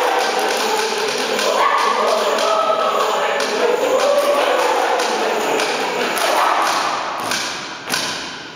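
Mixed choir singing with body percussion, sharp claps and stamps in rhythm under the voices. Near the end the singing fades and a few sharp final accents ring out in the church's reverberation.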